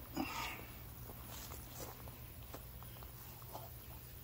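Quiet rustling and a few soft, scattered clicks: phone handling noise and footsteps in grass, over a low steady hum.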